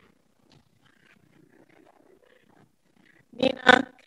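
Faint room sounds, then near the end two short, loud vocal bursts from a person's voice close to the microphone.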